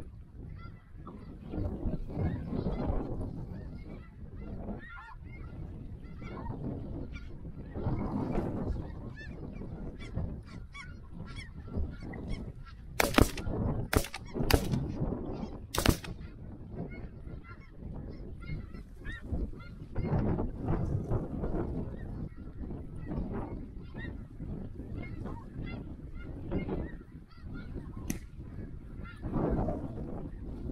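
Snow geese calling continuously in a dense chorus of honks. About halfway through, four shotgun shots are fired in quick succession.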